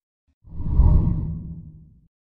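Whoosh transition sound effect, deep and airy, swelling in about half a second in and fading away over the next second.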